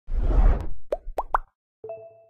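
Animated logo sting of the Kuaijianji video-editing app: a whoosh, three quick pops that each rise in pitch, then a short bright chime near the end that rings out.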